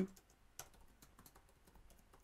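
Faint computer keyboard typing: a quick, uneven run of light keystrokes.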